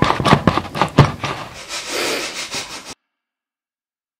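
Handling noise right after the final guitar chord: a quick run of knocks and rubbing, the loudest knock about a second in. The sound cuts off suddenly about three seconds in.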